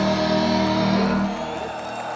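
A live heavy metal band's electric guitars holding a long chord that ends and dies away about one and a half seconds in.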